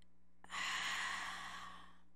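A woman's long breath out, a sigh, close to a microphone. It starts suddenly about half a second in and fades away over about a second.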